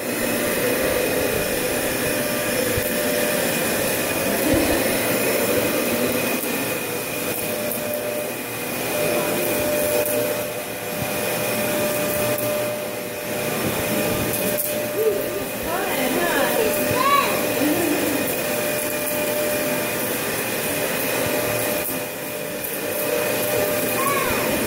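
Dyson Ball upright vacuum cleaner running steadily: a constant motor drone with a high whine, steady throughout once it comes up at the start.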